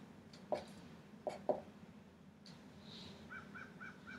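Dry-erase marker writing on a whiteboard. A few faint taps and strokes come first, then near the end a run of short, evenly spaced squeaks, about four a second.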